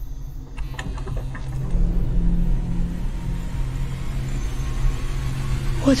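A low, steady droning rumble that swells about a second and a half in, with a few faint clicks near the start.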